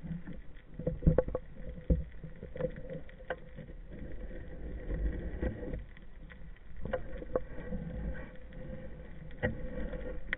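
Underwater sound picked up by a camera on a speargun: low rumbling water movement against the housing with scattered clicks and knocks, the loudest about a second in and just before two seconds.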